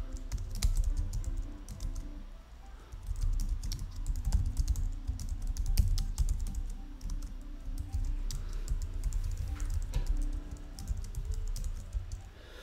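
Typing on a computer keyboard: irregular runs of key clicks, with a short pause about two and a half seconds in.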